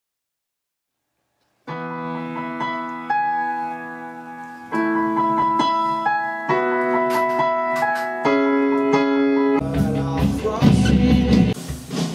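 After a moment of silence, a piano plays held chords that change every second and a half or so. Near the end, a fuller rock band sound comes in and the music gets louder.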